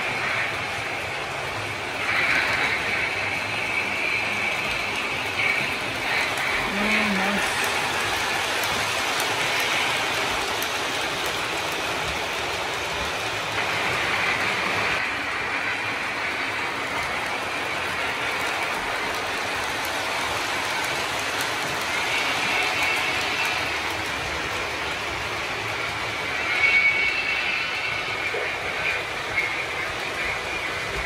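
Lionel O scale model trains running on the layout, a Santa Fe 0-6-0 steam switcher with boxcars and the Hogwarts Express: a steady rolling of wheels and motors on the track, with a few brief louder moments.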